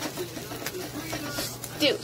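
A spatula scraping under a fried egg in a frying pan, with a few small clicks against the pan over a faint sizzle.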